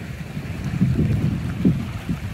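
Sea swell washing in and out among shore rocks and a tide pool, under a gusty low rumble of wind buffeting the microphone.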